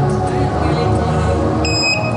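Background music, with a short, high electronic beep near the end.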